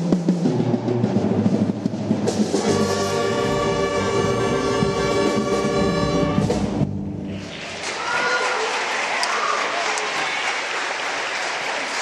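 Live concert band or orchestra with brass and timpani playing, ending on a long held chord about seven seconds in, followed by audience applause.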